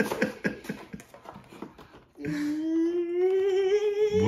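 A cardboard toy box being torn open: a run of short crackling tears and rustles. About halfway through, a person's long hummed note starts and rises slowly in pitch.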